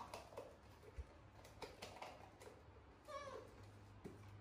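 Faint, short high-pitched calls from a baby monkey, several of them, the clearest near the end, with a soft knock about a second in and a few light clicks.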